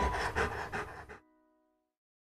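A dog panting over background music, cutting off suddenly about a second in, with a few musical tones ringing on briefly before silence.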